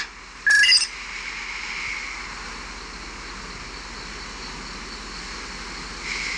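A short electronic communicator chirp, a quick run of beeps stepping up in pitch, as the call closes. It is followed by a steady hiss of background noise.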